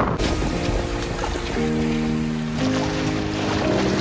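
Choppy Ganges river water splashing and washing over brick ghat steps in strong wind, with wind buffeting the microphone. Music with long held chords comes in about a second and a half in.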